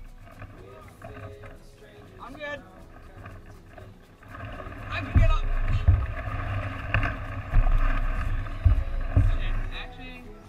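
A person struggling through dense brush under a canoe: branches rustling, strained vocal noises, and several heavy thumps against the canoe hull. It is quieter for the first few seconds and gets louder from about four seconds in.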